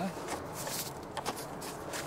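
Quiet handling noise: a few soft clicks and rustles as the sun visor's wiring and plastic mounting clip are pushed up into the car's fabric headliner.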